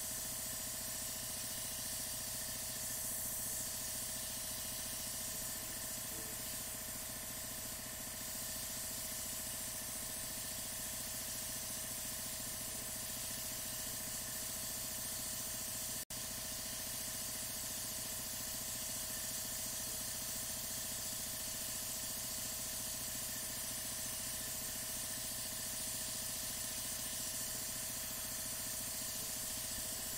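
Gravity-fed PointZero airbrush spraying acrylic paint: a steady hiss of air through the nozzle with a steady hum underneath. It cuts out for an instant about halfway through.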